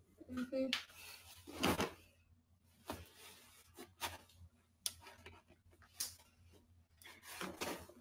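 Rustling, bumps and clicks of a phone or webcam being handled close to its microphone, with a couple of brief murmured vocal sounds.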